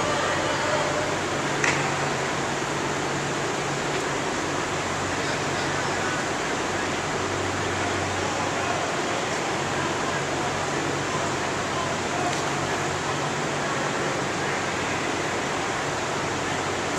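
Steady hiss and hum of large ventilation fans filling a big indoor practice hall, with distant voices and shouts echoing faintly under it.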